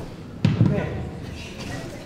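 A sudden thump about half a second in, followed by brief indistinct voices.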